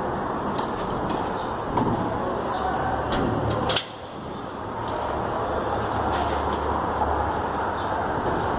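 Tennis rally on a clay court: racket strikes on the ball about every second and a quarter, over a steady hiss of outdoor city background noise.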